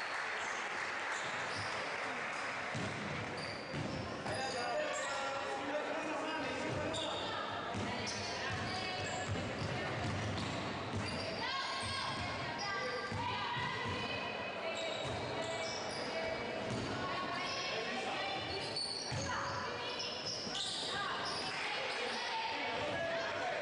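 A basketball bouncing on a hardwood court during live play in an echoing gym, with scattered short knocks and voices in the hall.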